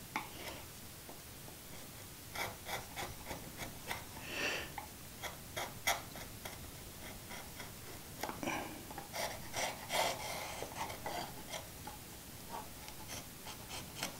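Narrow chisel scraping along a pre-cut dado groove in thin plywood, a quiet, irregular run of small scratches and ticks. It is picking torn wood fuzz out of the groove so the panel will fit.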